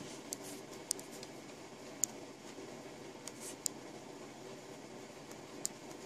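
Quiet room noise with about half a dozen small, sharp clicks and taps from hands handling things at close range.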